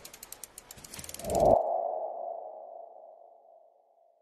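Logo-animation sound effect: a rapid run of fine ticks swelling into a whoosh about a second in, then a single mid-pitched ringing tone that fades away over about two seconds.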